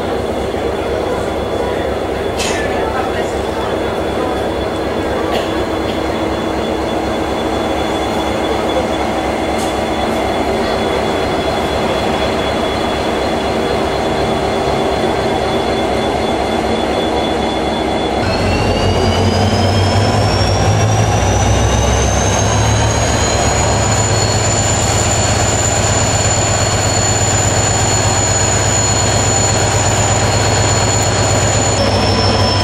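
An Irish Rail 071 class diesel-electric locomotive, No. 075, running steadily at idle. About 18 s in its engine throttles up: the rumble grows louder and a high whine rises in pitch for several seconds, then holds steady.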